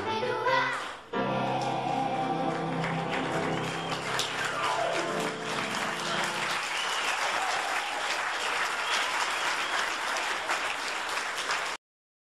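The last song of a children's musical ends on a long held chord from the choir and band while the audience breaks into applause. The chord stops about halfway through, and the clapping, with some voices, carries on until it is cut off abruptly near the end.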